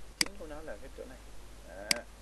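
Two sharp computer-mouse clicks, one just after the start and one near the end. Between them is a wavering, quavering voice-like sound, bleat-like in its pitch.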